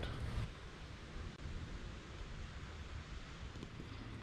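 Faint, steady outdoor background noise: a low rumble and soft hiss like light wind on the microphone, with no distinct events.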